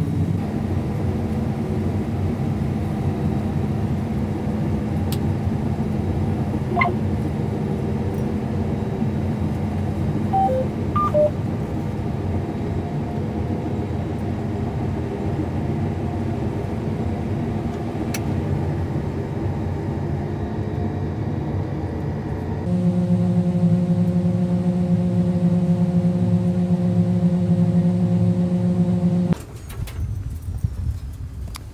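John Deere combine harvester running steadily, heard from the cab, with a few short electronic beeps about 7 and 11 seconds in. About 23 seconds in the sound jumps to a louder, steadier hum with stronger pitched tones, which drops away just before the end.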